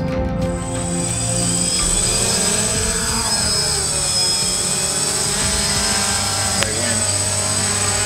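Quadcopter camera drone's rotors whining as it lifts off and flies low, the pitch rising and falling about three seconds in, with background music underneath.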